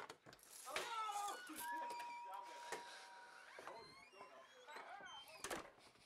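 Indistinct voices with a few sharp clicks and knocks, the loudest knock about five and a half seconds in, and a steady high tone held for about two seconds in the middle.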